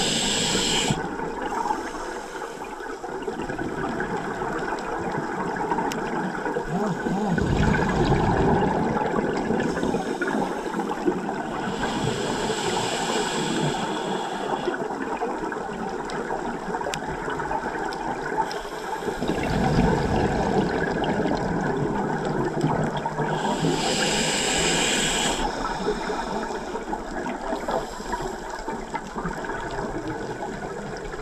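Scuba regulator breathing and exhaled bubbles heard underwater: three hissing breaths about 12 seconds apart, each followed by a lower, louder surge of bubbles.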